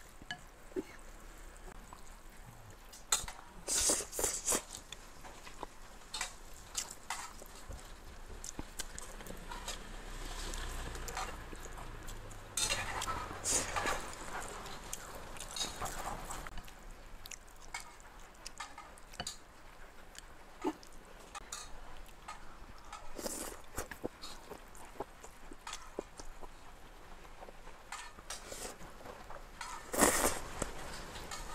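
Eating noodles: wet chewing and slurping mouth sounds mixed with chopsticks clicking against a ceramic bowl as the noodles are stirred and picked up. The sounds are irregular, with several denser, louder bursts.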